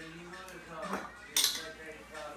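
Metal spoons scraping and clinking in small bowls as fruit is scooped out, with one sharp, loud clink a little past halfway.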